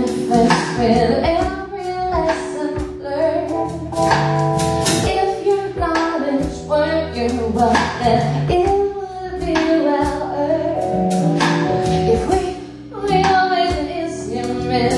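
Band music with a woman singing over drums and held chords.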